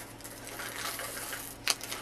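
Small loose craft beads clicking and plastic packaging rustling as they are handled into a bag, with one sharper click near the end.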